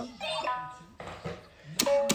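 A child's electronic toy drum slapped by hand on its plastic pad, each slap setting off short electronic notes. There is a couple of brief notes early, a tap about a second in, and a sharp tap with a note near the end.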